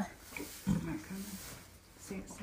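A foaling mare giving two short, soft, low grunts just under a second in as she strains through a contraction.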